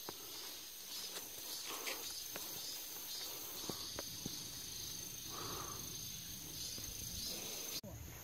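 Quiet outdoor field ambience: a steady high-pitched insect drone, with a few light clicks and rustles as the plants are brushed past. It breaks off sharply just before the end.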